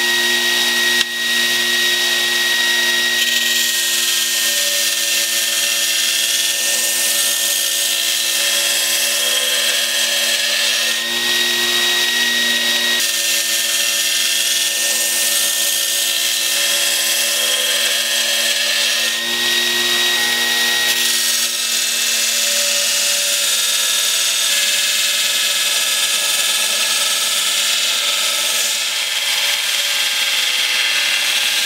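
Belt grinder running steadily, a motor hum and whine under a continuous high grinding hiss as spring steel from a leaf spring is pressed against a used belt. This is the first rough grind of the blade's profile and edge bevels, and the hiss changes slightly as the blade is shifted on the belt.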